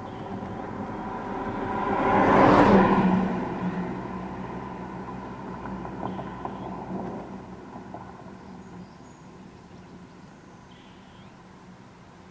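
A motor vehicle passing by: its engine and road noise swell to a peak about two and a half seconds in, then fade away slowly.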